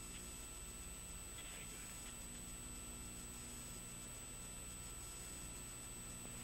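Faint steady hiss and electrical hum of a launch-control communications feed between calls, with a constant thin high-pitched tone; no rocket sound is heard.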